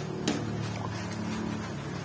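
A metal fork clicks sharply against the pan once as coconut milk with grated santol is stirred, followed by faint scraping ticks. Under it runs a steady low hum.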